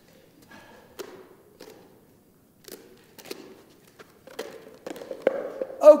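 Scattered light taps, knocks and footsteps on a carpeted floor as soccer gear is moved about, with one sharper click about five seconds in.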